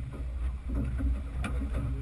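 Low, uneven rumble of strong wind buffeting the microphone on an open boat in choppy water, with a faint knock about one and a half seconds in.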